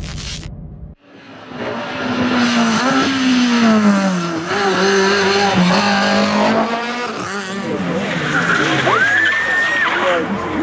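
Rally car engines at high revs, starting about a second in, the pitch falling and rising with gear changes as the cars take tight tarmac bends. Near the end a high tyre squeal rises sharply and holds for about a second.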